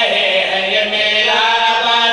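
Several men chanting a devotional recitation together in unison, with long held notes.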